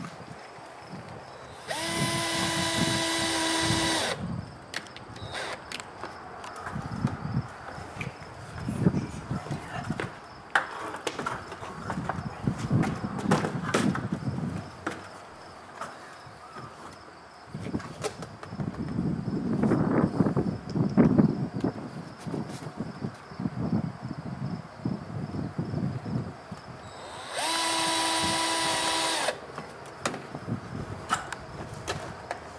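Cordless drill driver driving screws into a garage door frame: two steady motor whines of about two seconds each, one just after the start and one near the end. Between them are scattered clicks and knocks from handling the seal and the driver.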